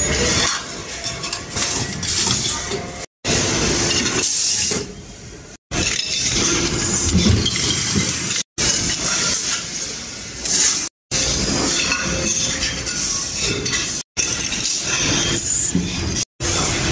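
Machines working stainless-steel flask tubes and bodies, heard in a series of short clips that each break off abruptly: a busy running noise with metal clinking and rattling.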